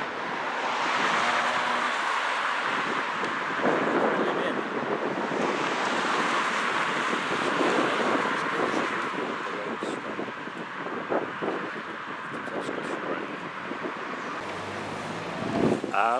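Street noise: road traffic passing, with wind buffeting the microphone, louder in the first half and easing off later.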